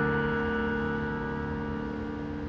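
Roland FP-50 digital piano: a held chord slowly dying away, with no new notes struck.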